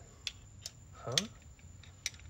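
A few light metallic clicks as a wrench and steel nuts are handled, two short clicks in the first second.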